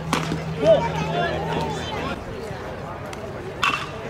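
A baseball bat hits a pitched ball once near the end, a single sharp hit. Voices from the crowd and players run underneath, with one louder shout less than a second in.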